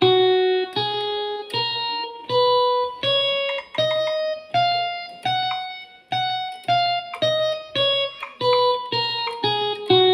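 Electronic keyboard playing the F major scale one note at a time: about eight notes rising step by step over an octave, then eight falling back down, at a steady pace of under two notes a second.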